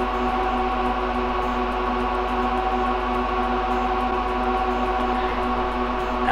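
Lenovo x3650 M4 rack server's cooling fans running at a steady speed: an unchanging drone of several steady tones.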